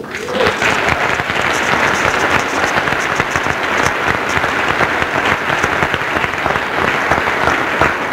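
Audience applauding: a dense, steady clatter of many hands clapping that builds within the first half second and then holds.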